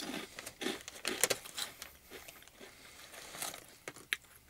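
Chewing a mouthful of crunchy Lotte shrimp-and-squid crackers: a run of irregular crisp crunches, thickest in the first two seconds, then thinning out.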